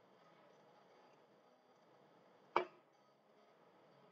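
Faint room tone with a single sharp click or tap about two and a half seconds in.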